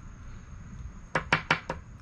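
A coin scraping across a scratch-off lottery ticket in four short, sharp strokes in quick succession about a second in.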